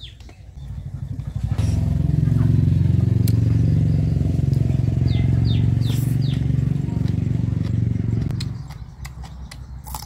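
A motorcycle engine passing close by: it swells in about a second and a half in, runs loud and steady for several seconds, and fades away near the end.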